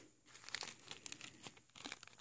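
Plastic bag of holographic glitter crinkling as it is picked up and handled: a run of faint, irregular crackles.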